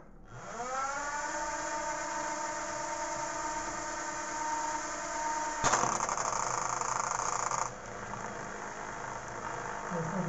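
Four tiny DC motors of a homemade matchbox drone spinning up with their propellers into a steady high whine. About six seconds in, a louder, rougher buzz breaks in for about two seconds, then the whine carries on more quietly.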